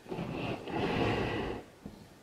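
A long breath out, a soft rushing that swells and fades over about a second and a half.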